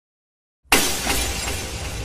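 Breaking-news intro sound effect: a sudden loud crash-like hit less than a second in, which then fades away over a low rumble.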